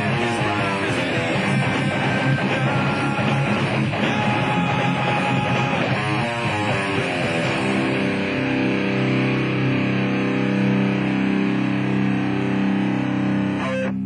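Electric guitar in drop C tuning (Schecter C-1 Classic through a Line 6 Spider III amp) playing along with a rock backing track. About eight seconds in, the busy playing stops and a final chord is left ringing steadily as the song ends.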